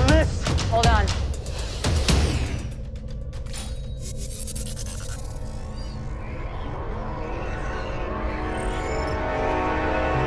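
Tense orchestral film score with sound effects. In the first two seconds a run of sharp hits comes with short rising pitch sweeps; then held dark chords swell steadily louder.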